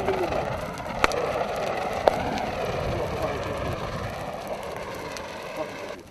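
Fire hose spraying extinguishing agent onto burning tyres: a steady rushing hiss that slowly fades, with two sharp clicks about one and two seconds in.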